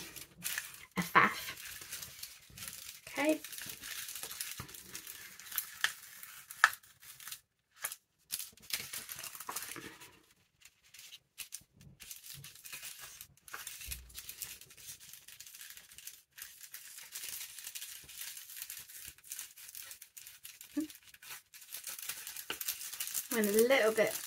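Old sheet-music paper being torn by hand in short, irregular rips, with crinkling and rustling as the torn strips are pulled back and handled.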